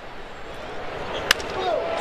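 Wooden baseball bat hitting a pitched ball: one sharp crack just over a second in, the contact of a home-run swing. It sounds over a steady ballpark crowd noise that grows louder, and a commentator's voice starts near the end.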